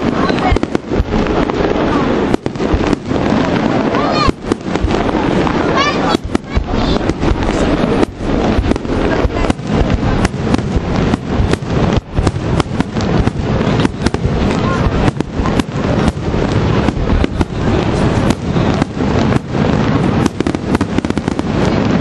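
Aerial fireworks show by Vaccalluzzo: a continuous run of shell bursts and crackling, with sharp bangs that come thicker and faster from about a third of the way in.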